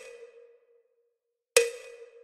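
A sharp percussive tick with a short ring on one mid pitch, about one and a half seconds in. It follows the fading ring of an earlier tick at the start, with near silence between the two.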